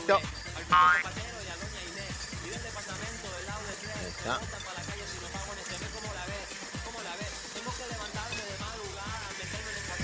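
Background music playing steadily, with a short, loud, high-pitched sound about a second in.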